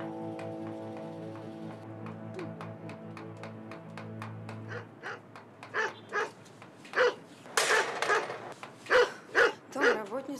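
Background music with held tones that fades out about halfway, then a Doberman barking repeatedly, about half a dozen loud barks, with a longer noisy burst among them.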